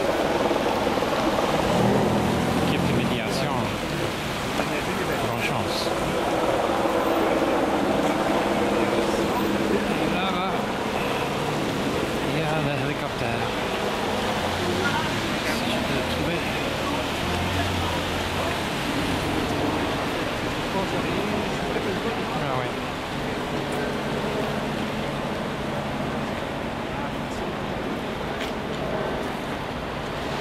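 City street noise: cars passing with tyres hissing on a wet road, mixed with indistinct voices of people outdoors.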